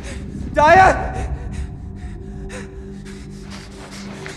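A young man's voice gives one short, loud gasping cry just under a second in, over a low, held music drone, with faint short sounds after it.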